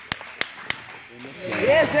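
Basketball dribbled on a hardwood gym floor: three sharp bounces about a third of a second apart in the first second, with voices coming in near the end.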